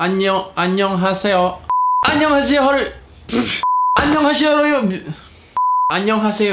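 A man's voice cut three times by a short, steady 1 kHz censor bleep, each about a third of a second long, at about two, three and a half, and five and a half seconds in; during each bleep all other sound drops out.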